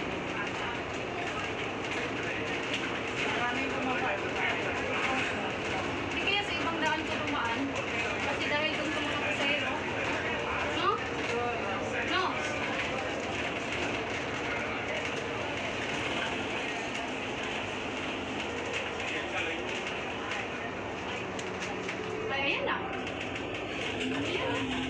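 Interior noise of a moving bus: a steady drone of engine and road, with indistinct voices of other passengers chattering underneath.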